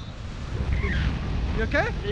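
Wind buffeting the camera's microphone in paraglider flight: a steady low rumble, with short voice sounds about halfway through and near the end.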